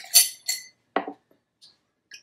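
Two glassy clinks about a third of a second apart, the first the louder and ringing briefly: a metal jigger knocking against the rim of a glass mixing glass as rye whiskey is poured in.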